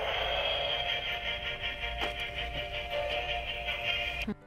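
Musical Jack Skellington snowman plush playing its built-in song, set off by pressing the button in its hand.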